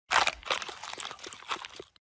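Dense crunching and crackling with many small snaps, starting suddenly and lasting almost two seconds.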